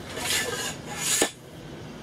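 Metal tent poles of a camper trailer being handled: two scraping rubs of metal on metal, ending in a sharp click about a second in.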